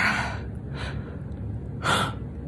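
A woman crying, drawing three sharp, shaky breaths behind her hand: a loud one at the start, a fainter one just under a second later, and another near the end. A steady low hum runs underneath.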